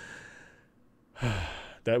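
A man's audible sigh: a breathy exhale into a close microphone, starting just past a second in and lasting about two-thirds of a second. A fainter breath fades out at the start.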